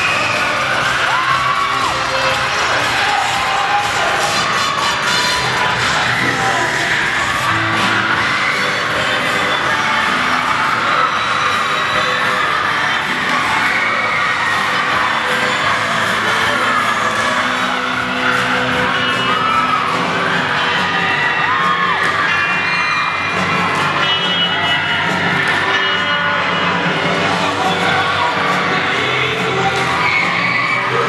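Crowd cheering and shouting over loud music playing for a dance routine, with a few short whoops rising and falling in pitch.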